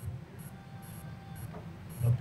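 Quiet room tone: a low steady hum, with a faint voice murmuring near the end.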